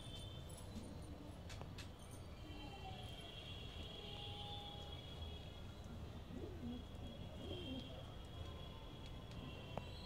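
Domestic fancy pigeons cooing faintly a few times, mostly in the second half, over a steady low rumble.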